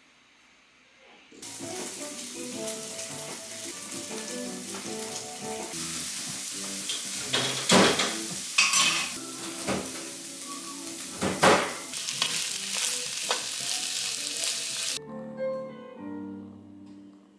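Food sizzling and frying in a pan on a gas stove, with a utensil knocking against the pan several times; the loudest knocks come about eight and eleven seconds in. The sizzling starts abruptly a second or so in and stops abruptly near the end.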